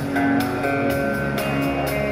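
Live acoustic guitar strummed with steady rhythm, other instruments holding long sustained notes underneath, an instrumental passage with no singing.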